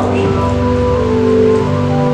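Live church band music: sustained, held chords over a steady hissing wash.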